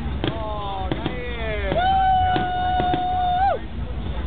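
Aerial firework shells bursting overhead with several sharp bangs. Over them runs a long drawn-out whistle-like tone that first glides down, then holds steady, and falls away near the end.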